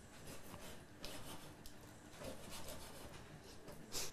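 Faint knife taps and scraping on a cutting board as chicken giblets are chopped into rough pieces.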